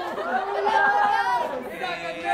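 Several people's voices chattering at once in a large room, too overlapped to make out words.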